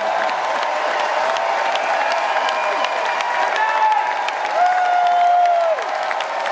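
Concert hall audience applauding, with sharp claps over a steady wash of clapping. Voices call out above it in several held shouts, the longest near the end.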